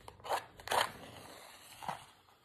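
A wooden strike-on-box match struck on the side strip of its cardboard matchbox: a few short scratchy scrapes, the strongest just under a second in, as the match flares alight.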